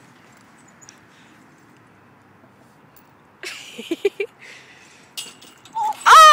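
Low steady outdoor background noise for about three seconds, then short bursts of a girl's laughter around a spoken word, with louder laughter starting right at the end.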